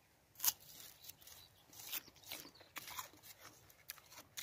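A crisp snap as a raw rhubarb stalk is bitten off about half a second in, then soft, irregular crunching as it is chewed.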